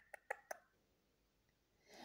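Near silence: room tone, with a few faint short clicks in the first half second.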